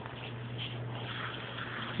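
Room tone: a steady low hum with a faint hiss and no distinct events.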